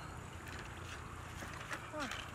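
Faint splashing and a few light knocks as a live fish goes into a plastic bucket of muddy water, over a steady low rumble.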